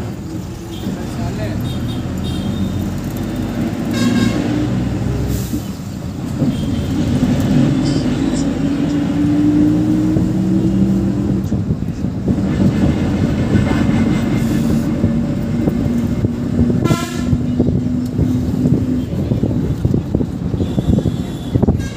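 Bus engine running as the bus drives along, its pitch rising partway through as it picks up speed, with two short horn blasts, one about four seconds in and one near the end.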